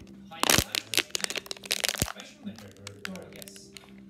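Plastic water bottle with water in it being squeezed and twisted by hand, its walls crackling and popping in a rapid run of sharp cracks, loudest about half a second in and again about two seconds in.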